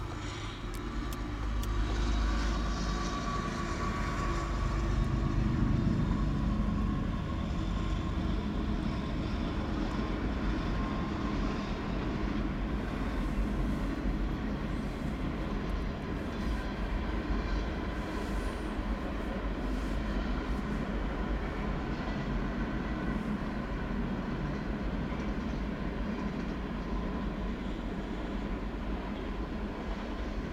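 A CSX diesel freight train passing, its locomotives loudest in the first several seconds, then the steady rolling noise of freight cars, tank cars and boxcars, going by on the rails.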